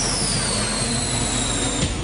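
Television promo sound design: a dense rushing noise with two high whistling tones sliding slowly down in pitch, over music. The tones cut off just before the end.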